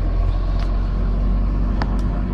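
Steady low road and engine rumble heard from inside a moving car's cabin, with two light clicks.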